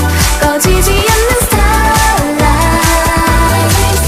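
Korean pop song with a female solo vocal over a synth and bass backing, playing at a steady, loud level.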